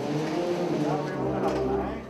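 Brass band playing a processional march: held brass chords that shift every half second or so, with a voice briefly heard over the music.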